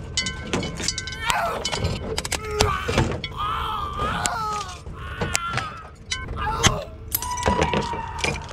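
A ceiling fan being handled and pulled apart: repeated knocks and clatter, with creaking and cracking as its particleboard blades are broken off at the mounts.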